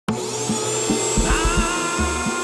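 Intro music: a loud rushing whoosh over held synth tones, with low drum hits that come faster about a second in.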